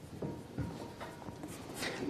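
Quiet room noise with faint rustling and shuffling, like papers being handled at the desks, and a breath just before speech resumes near the end.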